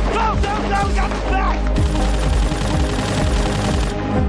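Drama soundtrack: a music score, then a dense rattle of gunfire from several guns that starts about two seconds in.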